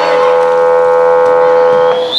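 The game's timing horn sounds one steady, loud blast of about two seconds at a single pitch, then cuts off suddenly. It signals a stoppage in play.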